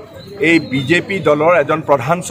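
A man speaking at a steady, animated pace after a brief lull at the start.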